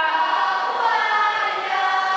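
Children's choir singing an Amis folk song together, holding long, steady notes.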